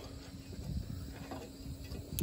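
Quiet outdoor background with a faint, steady low hum of one pitch over a low rumble.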